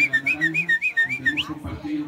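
High whistling: a quick run of short notes alternating between two pitches, opening and closing with an upward slide.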